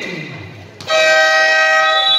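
An electronic gym buzzer sounds one loud, steady, horn-like tone. It starts sharply a little under a second in and holds for about a second.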